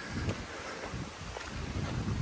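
Wind buffeting a phone microphone in an uneven low rumble, with a few faint footsteps on gravel and dirt trail.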